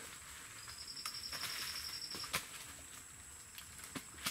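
Faint outdoor ambience with light rustling and a few sharp clicks as papaya leaves and fruit are handled. A high, rapid trill runs for about a second and a half near the start.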